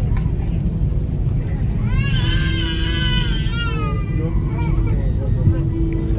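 A baby crying, one high wavering wail of nearly two seconds starting about two seconds in, over the steady low rumble of an Airbus A330 cabin on the ground after landing.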